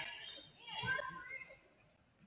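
Faint, distant voices of players and spectators calling out in a gymnasium, dying away after about a second and a half.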